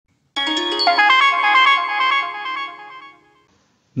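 A short electronic jingle of chiming notes: a quick run of stepped pitches that settles into held tones and fades out about three seconds in.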